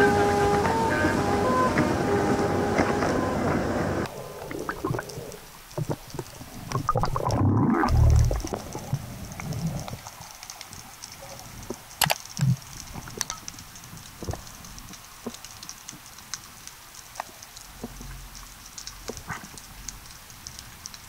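Background music that stops about four seconds in, followed by water sloshing and a heavy low thump as the camera goes under the sea surface. After that comes underwater sound: scattered sharp clicks over a faint steady crackle.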